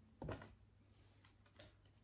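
Mostly near silence, broken by a short rustle of garments and their packaging being handled from the box about a quarter second in, and a fainter one near the end.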